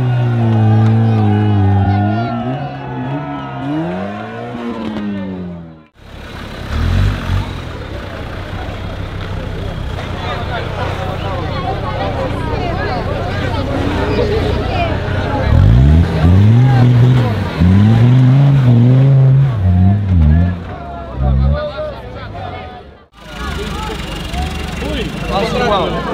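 Off-road 4x4 engines revving hard as they claw up a steep sand trench, the revs rising and falling in long surges, with a crowd of spectators chattering and shouting throughout. The sound breaks off abruptly twice, about six seconds in and near the end.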